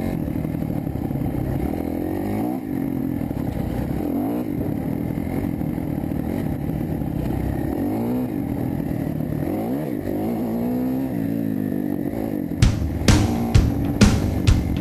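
Dirt bike engine revving up and down while riding a trail, its pitch rising and falling again and again with throttle and gear changes. Music with a drum beat comes in near the end.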